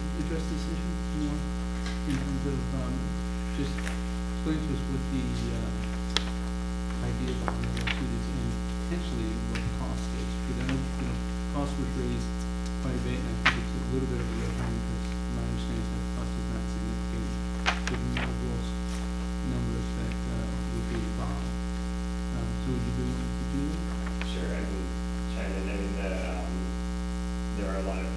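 Steady electrical mains hum with a ladder of overtones, with faint indistinct low talk underneath and a few sharp small clicks, the loudest about halfway through.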